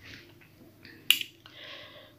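Plastic carrier bags rustling softly as they are handled and moved, with one sharp click about a second in.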